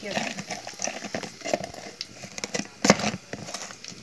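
Black slotted spoon scraping and knocking in a container of garlic seasoning paste as it is scooped out: a run of irregular clicks and knocks, the loudest about three seconds in, over a light sizzle of sausages frying.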